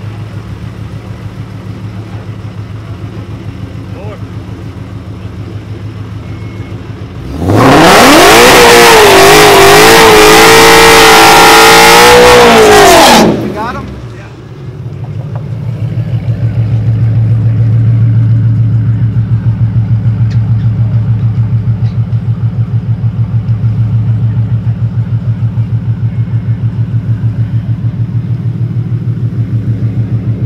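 Ford Mustang GT's 5.0 Coyote V8 idling, then revved hard and held at high revs for about six seconds in a burnout with the rear tyres spinning. It then drops back to a pulsing, rumbling idle.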